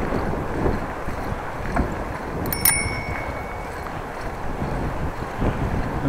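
Steady wind and rolling noise of a bicycle being ridden, with a single ring of a bicycle bell about two and a half seconds in, its tone dying away within about a second.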